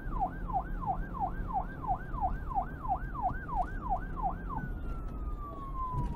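Police siren sound effect sweeping quickly up and down, about two and a half cycles a second, over a low rumble. Near the end it changes to one long falling tone as it winds down, then cuts off suddenly.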